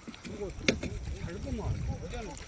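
Legs wading through shallow seawater, the water sloshing and swishing at each step, with one sharp click about two-thirds of a second in.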